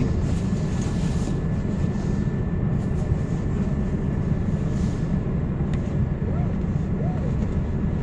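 Diesel truck engine running, heard from inside the cab as a steady low rumble, with a faint steady high tone over it.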